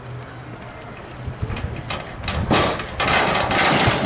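A diver going off a springboard into a swimming pool: a few low knocks from the board, then a loud splash about two and a half seconds in. It is followed by a steady rush of churning water and bubbles, heard with the microphone underwater.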